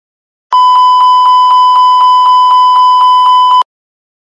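Airbus A320 cockpit master warning aural alert, the continuous repetitive chime: a loud, steady high-pitched tone pulsing about four times a second for about three seconds, then cutting off sharply. It signals a red warning: engine 1 oil pressure has dropped below the low-pressure limit.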